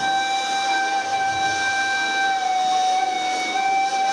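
Turkish neys, end-blown reed flutes, sounding one long breathy held note with only a slight rise in pitch near the end.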